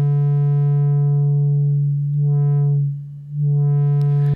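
A 1974 Minimoog holding one low triangle-wave note while its ladder low-pass filter cutoff is swept down and back up. The tone dims and brightens again twice, with a dip in loudness when the cutoff is lowest. The change is subtle because a triangle wave has so few harmonics.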